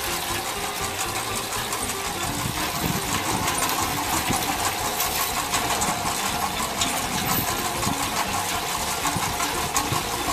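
Belt conveyor running steadily out of a basement dig-out, with dirt and broken brick and rock clattering off its end onto the spoil pile in many small knocks.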